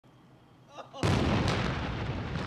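A tank's main gun firing: one heavy blast about a second in, followed by a long rumbling decay.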